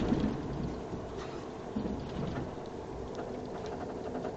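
Steady low rumble of a bus on the move, engine and road noise heard from inside the cabin, with a couple of brief louder bumps.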